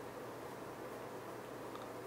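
Pen writing on paper, a faint scratching over a steady room hiss.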